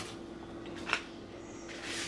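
Quiet kitchen room tone with a steady faint hum and one short, faint click about a second in.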